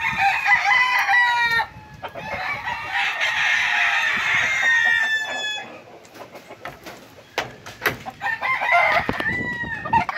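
Gamecock roosters crowing, several calls overlapping: one stretch of crowing in the first second and a half, a longer one from about two and a half to five and a half seconds, and another near the end. Between them are a few faint knocks.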